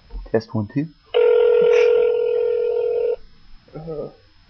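Telephone ringback tone heard down the line while a call rings through: one steady ring of about two seconds, with a short spoken 'uh' just before it and a brief voice near the end.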